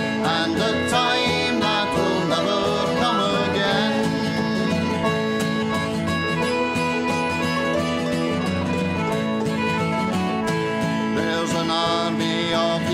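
Folk band playing an instrumental break without vocals: acoustic guitar, banjo, hammered dulcimer and whistle together in a steady country/bluegrass-style accompaniment.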